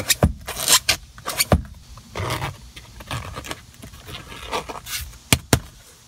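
Handling noise from a car seat's leather-covered armrest: scattered sharp clicks and knocks with some scraping, a few in the first second and a half and two close together near the end.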